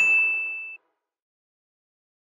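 A single high-pitched electronic ding sound effect, one clear tone that rings steadily for under a second and then cuts off.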